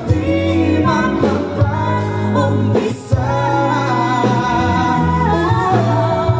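A male and a female singer singing a ballad duet over a live band, with held, wavering vocal notes and a steady bass line. There is a brief break about halfway through.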